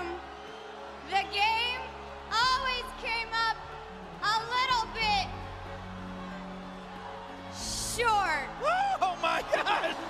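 A woman speaking in short phrases into a microphone over a background music bed of steady low sustained notes.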